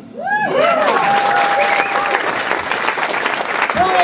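Audience applause and cheering breaking out just after the start, with whoops and one long held whistle about a second in.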